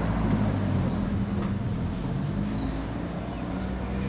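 A steady, low mechanical drone with faint wavering low tones.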